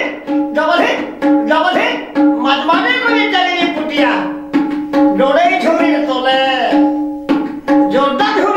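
A man singing a folk song over a two-headed barrel drum (dhol) played by hand, the drum's strokes recurring at one steady low pitch under the voice.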